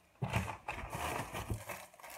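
Plastic shopping bag and the plastic packaging of a bag of carrots rustling and crinkling as the carrots are pulled out, with a few sharp crackles.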